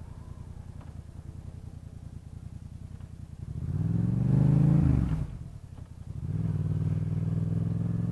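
Motorcycle engine running at low revs, then revving up and dropping back about halfway through before settling into a steady run.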